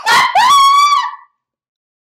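A man's loud, high-pitched shriek in reaction, starting with a breathy burst and then held on one pitch for about half a second before cutting off a little over a second in.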